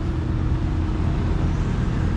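Steady low rumble of street traffic and vehicle engines, with a faint steady hum running through it.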